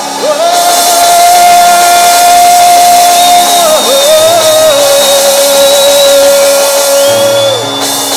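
Live church worship music: a long held note, then a slightly lower held note, over a steady sustained backing.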